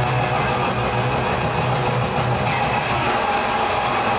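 Punk rock band playing live at full volume, with electric guitars and a drum kit, the song running on without a break.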